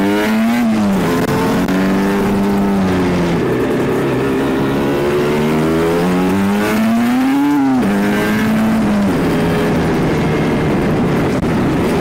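Small 50cc two-stroke motorcycle engine heard on board while riding, its pitch rising and falling with the throttle; a longer climb cuts off sharply about two-thirds of the way through. A steady rush of wind runs underneath.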